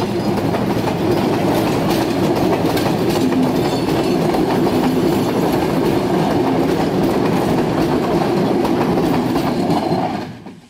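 Passenger coaches of a train rolling past close by, steel wheels clattering and clicking on the rails in a loud, steady run.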